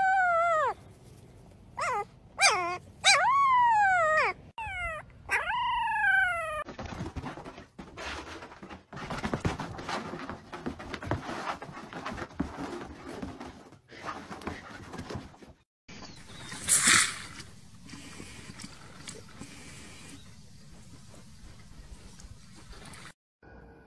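A puppy whimpering: a run of about six high cries, each sliding down in pitch, over the first six seconds. After that comes a stretch of uneven noise, with one brief loud burst past the middle.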